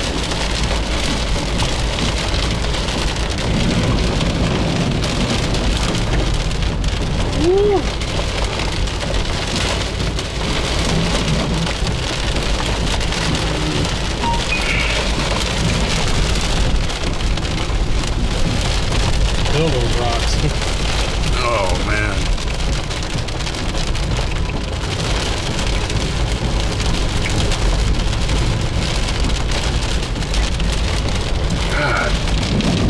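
Heavy rain falling on a car's roof and windshield, heard from inside the cabin as a steady, dense hiss over the low rumble of the car driving on a flooded road.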